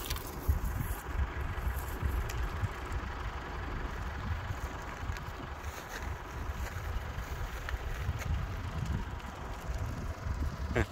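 Wind buffeting a phone's microphone outdoors: a steady, unsteady-flickering low rumble with a hiss above it.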